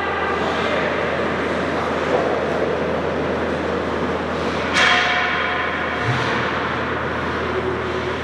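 Indoor ice-rink ambience: a steady wash of arena noise. About five seconds in, a held pitched call or tone sounds suddenly for about a second.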